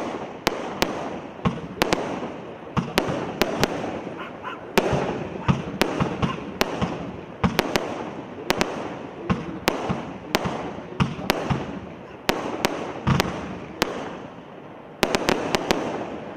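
Manta 42-shot single-ignition barrage firework firing shot after shot: sharp bangs about two or three a second as the shells burst overhead, with crackling glitter between them. A quick cluster of bangs comes near the end.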